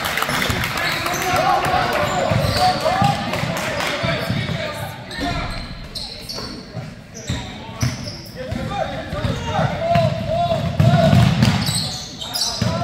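Basketball game sounds in a gym: a ball bouncing on the hardwood floor and sneakers squeaking in short chirps. Indistinct voices from players and spectators run throughout.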